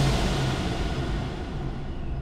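Supercharged 6.2-litre Hemi V8 of a Dodge Challenger Hellcat falling back from a rev of about 4700 rpm toward idle, the sound dying down as the revs drop.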